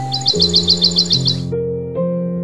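Slow, sad piano music with a bird's rapid chirping trill, about eight chirps a second, mixed over it. The chirps and a high background hiss cut off suddenly about one and a half seconds in, while the piano notes carry on.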